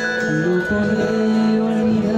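Acoustic guitar and an electronic keyboard playing together in an instrumental passage, the keyboard holding long steady notes.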